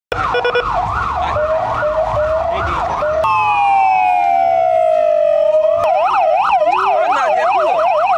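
Electronic police-car siren sounding a fast yelp, rising and falling about three times a second. A little after three seconds it switches to a long, slow falling wail, and near six seconds the fast yelp resumes.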